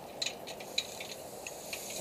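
A few light clicks and taps of metal antenna hardware being handled, over a faint steady hiss.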